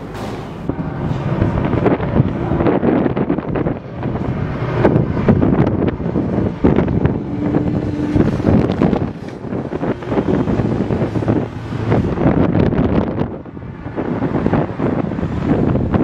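Wind gusting on the microphone over the engines of motorcycles passing along the road below, the noise swelling and dipping in waves. A brief steady hum sounds about eight seconds in.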